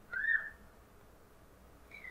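A short, faint whistling tone that rises and then falls within the first half-second, followed by near silence.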